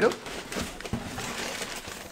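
Crumpled kraft packing paper rustling and crinkling as a plastic-boxed puzzle cube is pulled out from among it.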